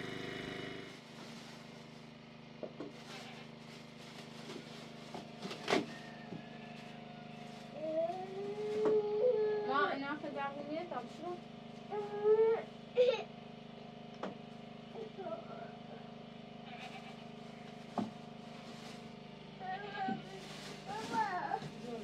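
A woman and a small child talking in high-pitched voices, over a steady low hum, with a few sharp knocks.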